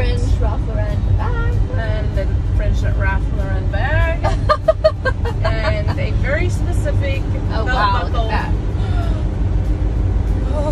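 Steady low road and engine rumble inside the cab of a pickup truck driving on a highway, with a woman's voice talking over it.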